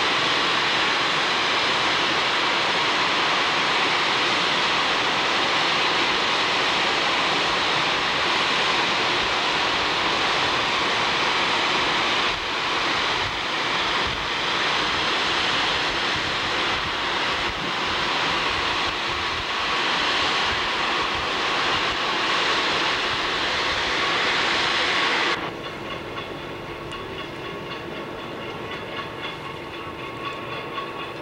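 Iron ore pouring down an ore dock's chutes into a lake freighter's hold: a loud, steady rushing hiss. It cuts off abruptly about 25 seconds in, leaving a quieter hum with a few steady tones.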